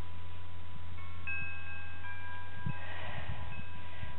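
Wind chimes ringing: several clear tones at different pitches start about a second in and hang on, with a few more near three seconds, over a steady low rumble.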